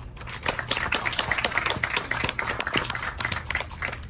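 Audience applauding, starting a moment in and dying away near the end.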